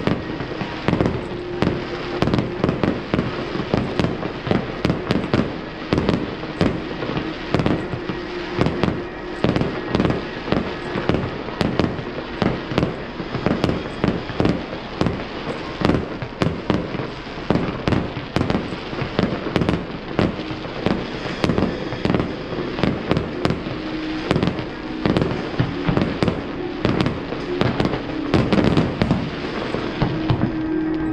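Fireworks display: a dense, continuous string of bangs from aerial shells bursting, a few a second.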